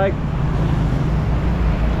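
Low, steady rumble of street traffic with motor scooters passing.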